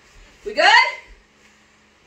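Speech only: one short spoken question, rising in pitch, about half a second in, then quiet room tone with no music.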